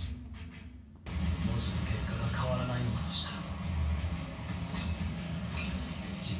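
Anime episode soundtrack: background music with a character's voice, cutting in suddenly about a second in after a brief lull.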